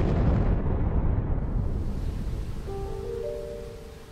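A large propellant pressure tank bursting in a test to destruction: a sudden loud blast, then a deep rushing noise with a hiss that fades over about three seconds. Music notes come in near the end.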